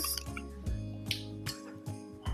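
Soft background music, with a few faint clicks and a brief hiss as the screw cap is twisted off a bottle of Baileys Irish cream.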